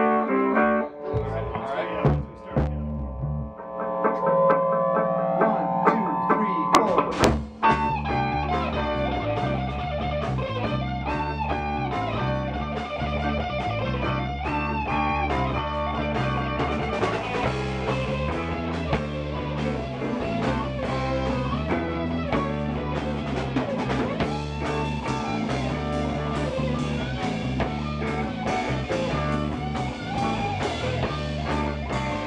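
Live band playing in a small room: electric guitars and bass start with a few sparse held notes, then drums and percussion come in with the full band about seven seconds in. The sound fills out further around halfway.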